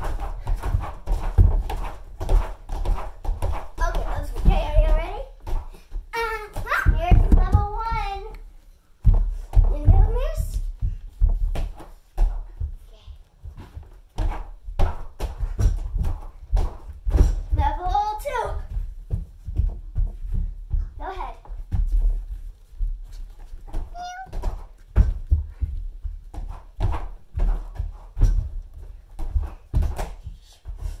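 Repeated, irregular dull thuds of children jumping and landing on an inflatable air-track tumbling mat, with bursts of children's shrieks and chatter.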